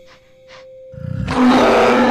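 A held music note, then about a second in a loud, sustained monster roar from a yeti creature.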